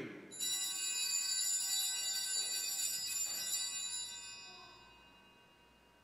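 Altar bell rung once at the elevation of the host during the consecration, its bright, high tones ringing out and fading away over about four seconds.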